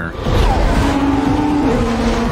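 Formula One car passing at speed, a loud rush of engine and tyre noise whose engine note steps down in pitch near the end.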